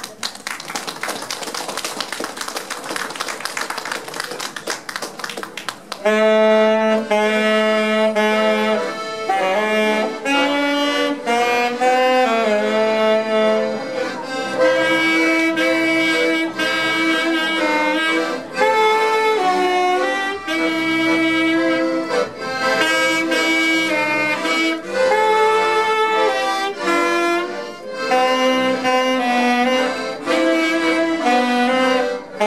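Applause for about six seconds, then two accordions and a saxophone strike up an instrumental tune in held, changing notes.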